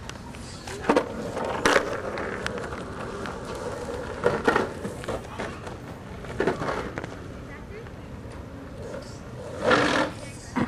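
Wheels of a Hamboard fish, a giant surf-style skateboard, rolling steadily on pavement, with several sharp knocks and scuffs; the loudest comes near the end.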